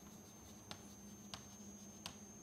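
Chalk writing faintly on a blackboard, with two light taps as letters are formed.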